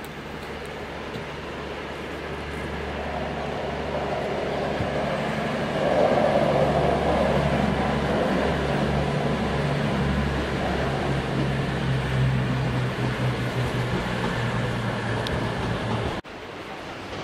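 Bombardier Voyager diesel multiple unit passing, its underfloor diesel engines running with a steady low hum over rail noise. It grows louder over the first six seconds, then holds.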